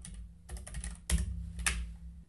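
Typing on a computer keyboard: a quick, uneven run of key clicks, with a few louder strokes in the second half.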